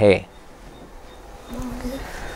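A pause after a spoken word with low room noise, then a faint steady buzz sets in about one and a half seconds in.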